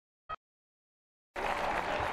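The sound drops out to dead silence, broken by one short click about a third of a second in. Stadium crowd noise comes back about two-thirds of the way through.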